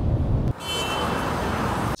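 Low road rumble from a moving car, cut off about half a second in by steady city street traffic noise with a faint high-pitched tone in it.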